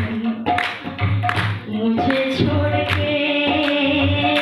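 A woman singing held, stepping notes while playing tabla: low strokes on the bass drum and sharp strokes on the treble drum keep a steady rhythm under the voice.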